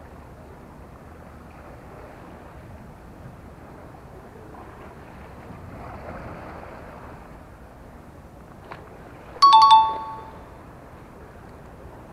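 A two-note electronic ding-dong chime rings once, about nine and a half seconds in, over a steady background of wind and sea noise.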